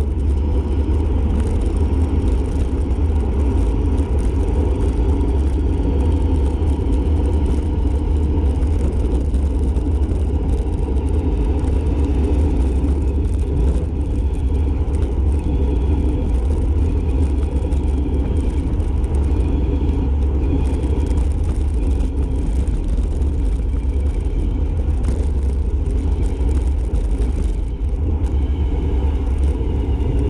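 Wind buffeting the microphone of a bike-mounted camera on a fast downhill coast, a steady low rumble that does not let up.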